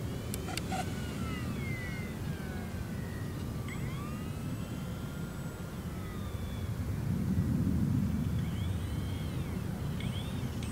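Electric motor and propeller of a small E-flite UMX Turbo Timber Evolution RC plane flying on a 3S battery: a thin whine that glides up and down in pitch as it passes and changes throttle, over a steady low rumble. It grows louder about seven to eight seconds in, as the plane comes by close.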